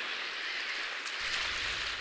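Steady, even outdoor hiss with no distinct calls; a low rumble joins a little past halfway.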